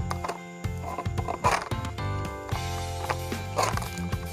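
Background music with sustained tones, and a short, loud burst of sound about one and a half seconds in.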